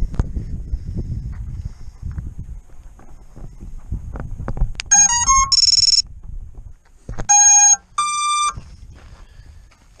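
FPV quadcopter's motors beeping the ESC power-up tones as the battery is connected: a quick run of short electronic tones about five seconds in, then two longer steady beeps, the second higher. Handling rustle and knocks come before the tones.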